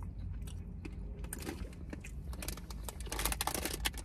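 Soft chewing of a gummy candy, then a plastic snack bag crinkling in a quick run of crackles over the last second or so, over a low steady hum.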